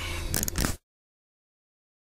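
Low steady hum of the Audi A3 1.8 20v engine idling, heard inside the car, with a couple of sharp clicks. The sound cuts off dead less than a second in, followed by total silence.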